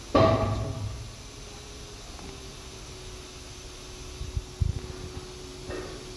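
Handling noise from a plastic charcoal canister being turned over in the hand: a sharp clatter right at the start that dies away within a second, then a few soft knocks later on over a faint steady hum.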